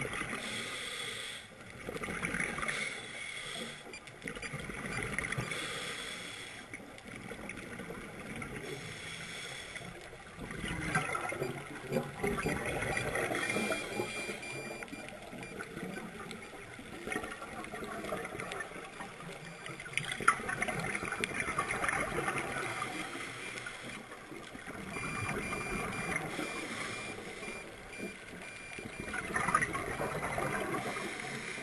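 Scuba breathing underwater: exhaled regulator bubbles gurgling in uneven swells every few seconds, with quieter stretches between, and a single sharp click about twenty seconds in.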